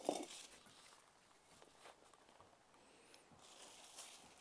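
Near silence with faint rustling and light scuffs of potting compost being pressed in by gloved hands around a plant in a pot.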